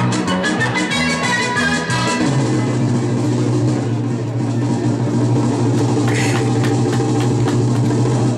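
Music for a mass gymnastics routine. About two seconds in it settles into a long held low note under a steady chord.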